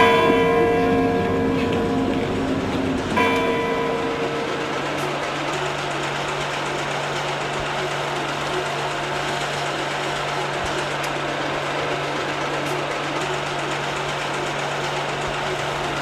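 Two held musical notes, one at the start and one about three seconds in, fade out by about five seconds. After that comes a steady mechanical whirr with a low hum.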